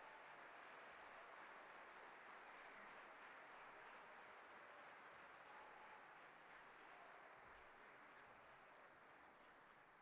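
Audience applauding, faint and steady, slowly dying away near the end.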